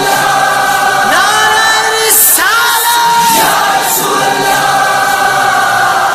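Chorus of voices singing long held notes of an Urdu naat, sliding up into each new note about once a second, over a light regular beat.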